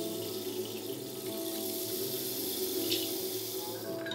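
Choir singing long held chords, with low notes changing in slow steps underneath, over a steady hiss.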